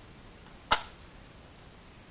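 A single sharp strike about three-quarters of a second in, fading quickly: a flame being struck to light a Trangia alcohol burner.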